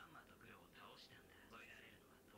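Very faint voice dialogue from the subtitled anime episode playing at low volume, barely above near silence.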